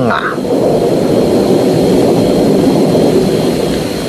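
Thunder: one long, loud rolling rumble that sets in just after the start, with no rain.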